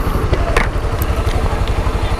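Honda CB 300's single-cylinder engine idling with a steady, rapid pulse, under a haze of street traffic noise.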